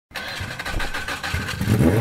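An engine running with rapid pops, then revving up with a rising pitch near the end.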